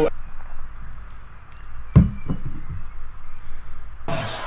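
A single dull knock about two seconds in, followed by a fainter one a moment later, over a steady low background hum.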